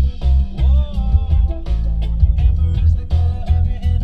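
A rock song with singing and guitar playing loudly through a car stereo, with a Rockville RMW8A 8-inch ported powered subwoofer brought in under it, adding heavy bass and a pounding kick drum.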